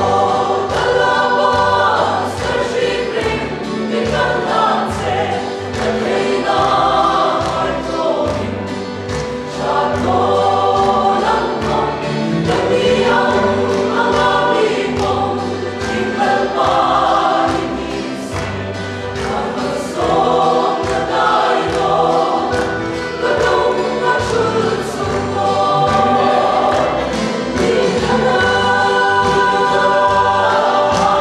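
Mixed choir of men's and women's voices singing a gospel song together.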